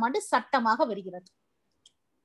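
A person speaking for about the first second, then the voice stops and there is dead silence.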